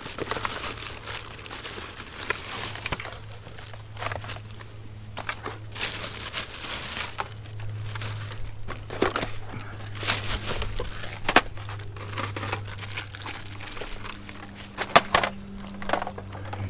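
A thin plastic shopping bag and cardboard packaging rustling and crinkling in irregular bursts as hands dig through them, with a few sharper crackles. A steady low hum runs underneath.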